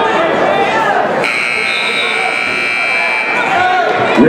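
Wrestling scoreboard buzzer sounding one steady electronic tone for about two seconds, starting just over a second in, over the chatter of a gym crowd.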